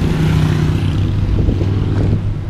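A motor vehicle's engine running close to the microphone, a steady low hum amid street traffic.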